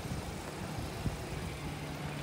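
Steady low engine hum under outdoor background noise, with one faint tick about a second in.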